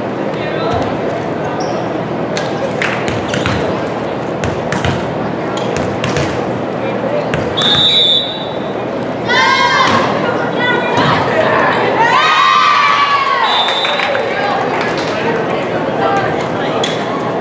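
Volleyball being struck and bouncing on a hardwood court in a reverberant gym, over steady crowd chatter. A short, high whistle blast comes about seven and a half seconds in and again near thirteen and a half seconds, with players and spectators shouting in between.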